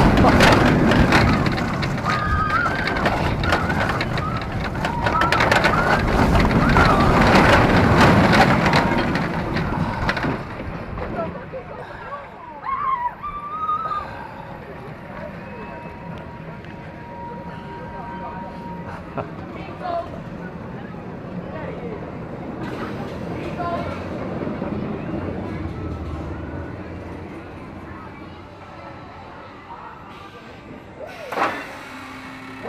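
Stinger, a Vekoma Invertigo inverted shuttle coaster, heard from the front seat: loud track rumble and wind rush as the train runs the course, with riders' voices. About ten seconds in the noise drops sharply as the train slows, and it rolls on quietly with a faint thin whine for a few seconds.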